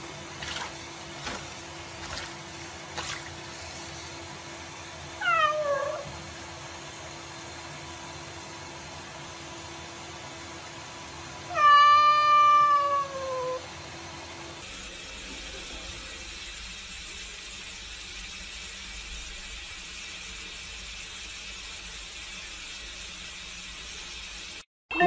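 A cat in a sink being bathed meows twice, a short falling meow about five seconds in and a longer, louder falling meow about twelve seconds in. Under it runs a steady hiss of water from the tap.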